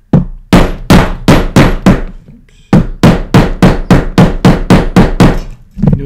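White poly mallet striking a metal setting punch again and again, about three sharp blows a second with a short pause partway through, setting a rivet cap on a leather sheath against a metal support.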